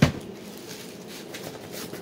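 A single knock right at the start, then faint rustling and handling sounds.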